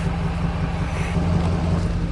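Steady engine and road hum inside a moving car.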